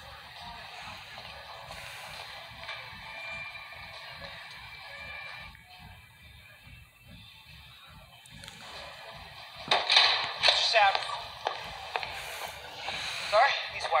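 Film soundtrack played through a TV and recorded on a phone: quiet held music, then from about ten seconds in indistinct voices and sharper sounds over it.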